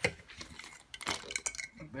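A few light, sharp clicks and clatters as a plastic ballpoint pen drops out of a vacuum cleaner hose onto the floor and the plastic hose is handled.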